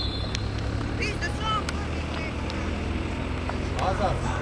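Outdoor football-pitch sound: a steady low hum, with the last of a referee's whistle fading in the first second. Short distant shouts from players about a second in, and voices again near the end.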